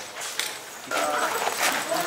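Low voices of several men talking, faint in the first second and then louder and busier.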